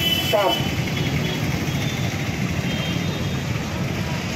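A man's voice trails off in the first half second, then the steady low rumble of street traffic.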